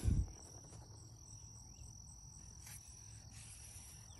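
Quiet background with a faint, steady high-pitched whine, and one soft low thump at the very start.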